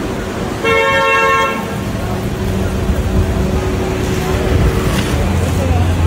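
A car horn gives one short, steady toot of just under a second, about a second in, over continuous street noise.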